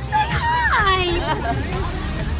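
Several people's voices over background crowd chatter, including a long exclamation that falls steeply in pitch, with a low steady street rumble underneath.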